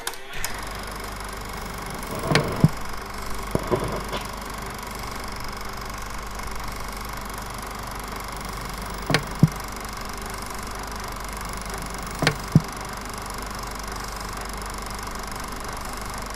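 A steady low hum with a faint hiss, like an idling engine, broken by a few pairs of short dull thumps.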